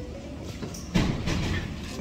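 Indistinct background talk over room noise, rising about a second in.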